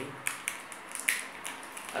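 Small plastic earphone parts being handled by fingers, giving several light clicks and rustles, the sharpest about a second in.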